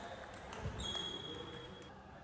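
Faint knocks of a table tennis ball on bat and table. A thin high tone is held for about a second in the middle.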